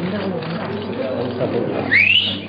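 Crowd chatter of many overlapping voices, with a loud, sharp rising whistle near the end.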